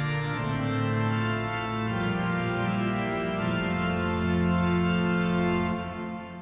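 Organ music: slow, held chords that change a few times, fading out near the end.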